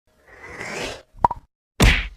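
Logo-intro sound effects: a rising swoosh, then two quick pops a little past a second in, then a loud sharp hit near the end.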